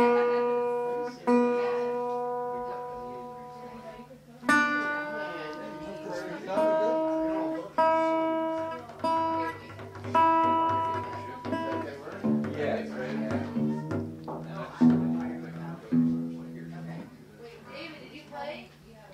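Regal resonator guitar in open D tuning, played fingerpicked: single notes and chords struck about every second or two, each ringing out with the shimmery sustain of its aluminum cone. In the last few seconds it moves to quicker, lower notes.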